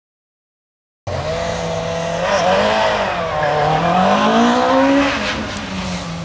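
Peugeot 106 hillclimb car's engine at full effort through the bends, cutting in suddenly about a second in. The revs rise and fall with the gear changes, climb to a peak, then drop and hold steady near the end.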